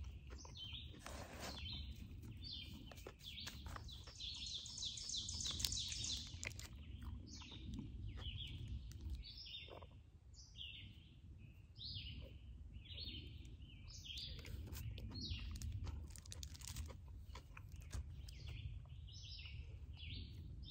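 Forest songbirds singing in short, repeated high chirping phrases, a dense run near the start and then about one phrase a second.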